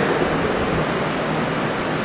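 Steady hiss with a low, even hum under it: the background noise of a classroom, with no distinct events.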